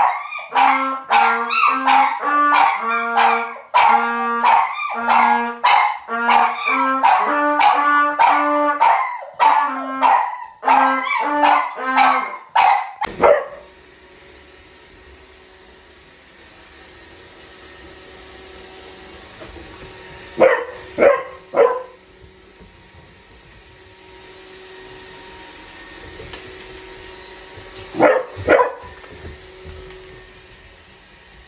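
A trumpet played in short held notes while a dog howls along with it. After about thirteen seconds this gives way to the faint steady hum of a robot vacuum, broken twice in the second half by a few short dog barks.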